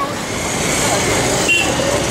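Busy street traffic noise, a steady wash of passing vehicles, with indistinct voices of people nearby.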